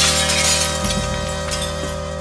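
Glass-shattering sound effect, its glittering debris tail thinning out over a held musical chord that slowly fades.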